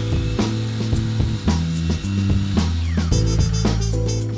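Miter saw blade spinning and shaving a very thin sliver off the end of a pine board, under background music.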